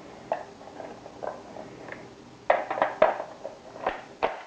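Handling clicks and knocks as a UTG Model 15 tactical foregrip is worked onto the rail of an airsoft M4 replica: a few light taps, then a quick run of sharper clicks about two and a half seconds in, and another pair near the end.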